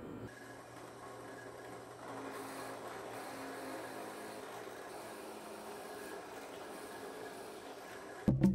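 Bench drill press running with a faint, steady hum that gets a little louder about two seconds in.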